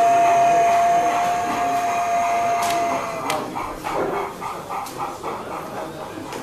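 An O gauge model steam locomotive's sound system blowing one long, steady whistle of about three seconds. It is followed by a rhythmic chuffing of about three beats a second as the locomotive runs.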